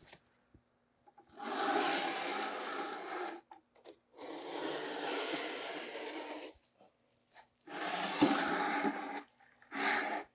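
Graco Magnum X7 airless spray gun releasing water into a bucket in three bursts of about two seconds each, with a short fourth burst at the end, as the line is flushed clean of paint.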